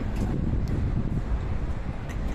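Wind buffeting the camera's microphone: a steady low rumble with no clear pattern.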